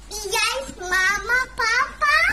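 A high-pitched voice making several short sing-song phrases with wavering pitch, without clear words.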